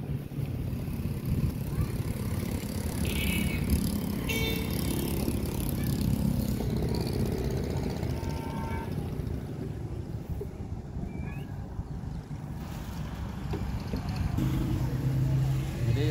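Steady low rumble of a moving vehicle's engine and road noise, heard from on board, with brief high-pitched tones about three to five seconds in.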